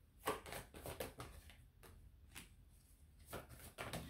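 A deck of oracle cards being shuffled by hand, faint: a quick run of short card strokes in the first second, then single strokes about two and a half and three and a half seconds in.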